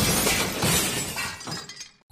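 Breaking-glass sound effect: a shattering crash whose noisy tail fades out over about two seconds, with a smaller second surge about half a second in.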